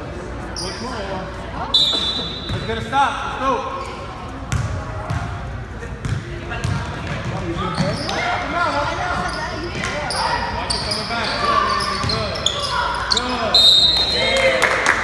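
Youth basketball game in a gym: the ball bouncing on the hardwood floor, sneakers squeaking, and players and spectators calling out in the echoing hall. A short, high referee's whistle sounds about two seconds in and again near the end, as players dive for a loose ball.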